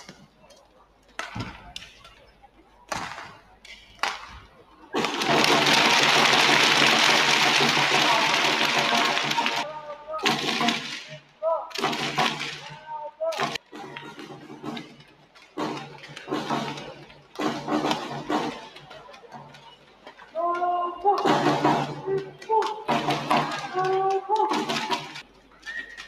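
Badminton rally with several sharp racket hits on the shuttlecock. About five seconds in, the point ends and a loud burst of crowd cheering lasts about five seconds. Voices follow between points.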